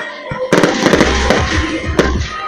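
Aerial fireworks shells bursting in a display: a sharp bang about half a second in, then several more bangs with a deep rumble through the second half, over music.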